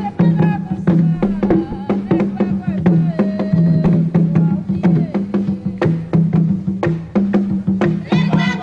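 Haitian Vodou ceremonial drumming: a fast, dense pattern of hand-drum strikes under steady low drum tones, with voices singing a chant over it.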